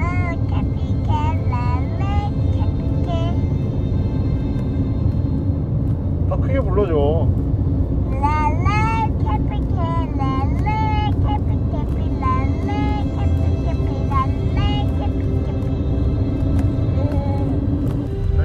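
A young child singing a song inside a moving car, over the steady low rumble of road noise.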